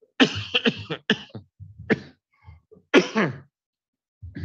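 A man coughing repeatedly, a run of short harsh coughs in the first second and a half, then single coughs about two and three seconds in.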